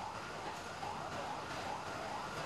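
Faint emergency-vehicle siren wailing, its pitch rising and falling over and over, above a steady hiss of outdoor background noise.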